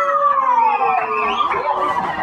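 A person's long, high vocal cry, held for nearly two seconds and sliding slowly down in pitch, like a drawn-out exclamation in reaction to the preacher's line.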